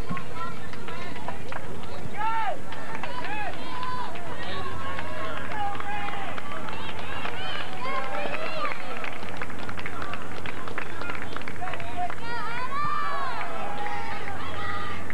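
Several high, indistinct voices shouting and calling out across a soccer field during play, over the steady hiss and low hum of an old camcorder recording.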